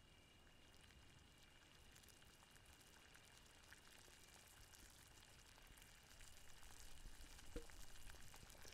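Near silence: faint steady hiss with a thin high whine and scattered faint crackles, growing a little louder near the end.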